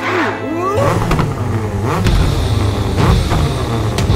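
Cartoon monster-truck engine sound effect, rumbling and revving over background music, coming in about a second in.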